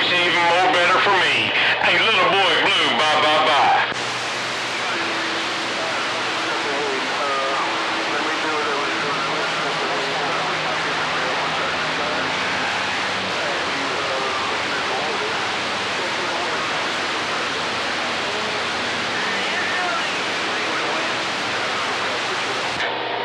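CB radio on channel 28 receiving a garbled, warbling voice transmission that cuts off about four seconds in, leaving steady static hiss from the band. Faint distant voices and carrier tones from weak skip stations stay buried in the hiss.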